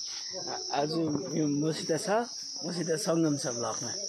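A steady high-pitched insect drone, like crickets or cicadas, runs without a break under men's voices talking.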